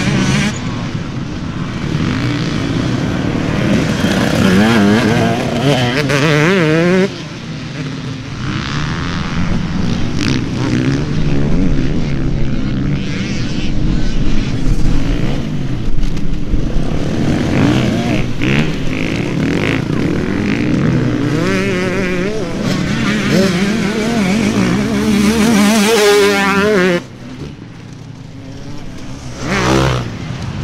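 Motocross dirt bike engines revving hard, their pitch climbing and falling again and again as the riders accelerate and shift. The sound drops abruptly about seven seconds in and again near the end.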